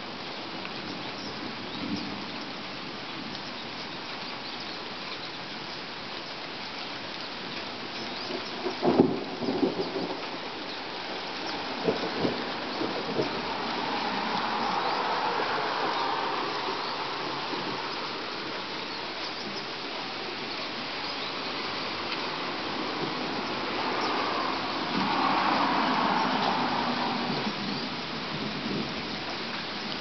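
Steady rain falling, with a sharp crack of thunder about nine seconds in and a few smaller cracks shortly after. Twice a car's tyres swish past on the wet road, building and fading around fifteen and twenty-six seconds in.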